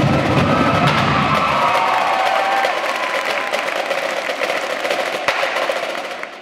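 An indoor percussion ensemble plays: rapid drum strokes with held pitched tones over them. A heavy low part cuts out about a second and a half in, and the music fades near the end.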